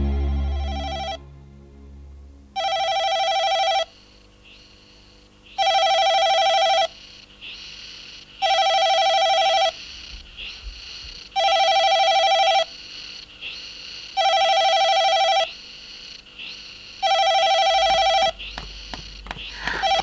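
Desk telephone ringing with a fluttering electronic ring: six rings about a second long, roughly three seconds apart. The tail of background music fades out in the first second, and a few faint knocks come near the end.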